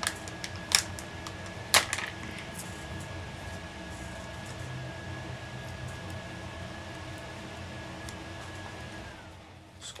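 Paper stickers and cardstock being handled, peeled and pressed down by hand: a few light clicks and taps, the sharpest about two seconds in, over a steady background hum with a thin high tone that stops shortly before the end.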